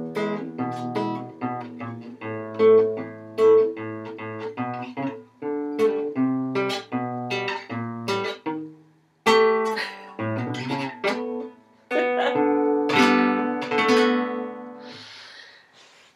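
Nylon-string classical guitar played solo, a run of picked notes and strummed chords, with brief pauses about nine and twelve seconds in.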